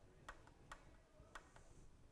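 Faint clicks, three or four spread unevenly, from a 4 mm Allen key turning a windshield mounting bolt as it is tightened down.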